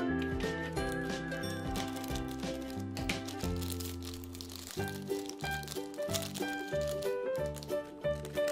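Background music, with the crinkling of a shiny plastic surprise packet being torn open and handled.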